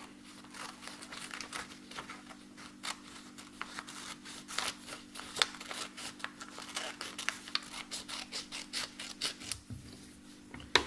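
Scissors cutting a folded sheet of paper: an irregular run of short snips through the paper. A low steady hum sits underneath.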